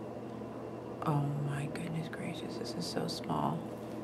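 A quiet, murmuring voice with no clear words, starting about a second in, over a steady low background hum.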